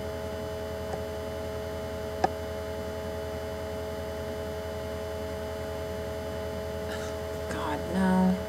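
Steady electrical mains hum, several constant tones over a low drone, with one sharp click about two seconds in.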